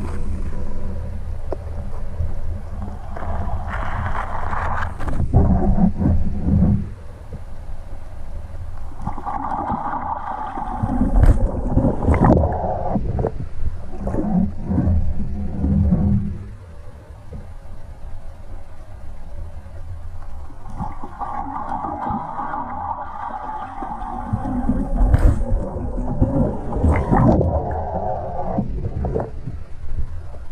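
Water heard through an underwater camera's housing: a steady low rumble, with several long stretches of gurgling as the hollow-body frog lure is worked across the surface overhead, and a few sharp knocks about a third of the way in and again near the end.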